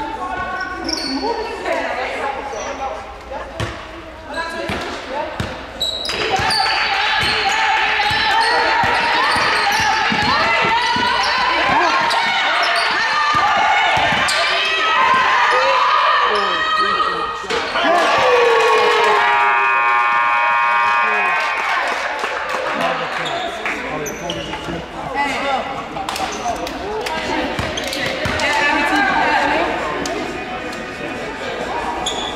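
Basketball game sounds in a gym: a ball bouncing, short sneaker squeaks and the shouting voices of players and spectators. About two-thirds of the way through, an electric scoreboard horn sounds one steady blast of about two seconds, the buzzer ending the game.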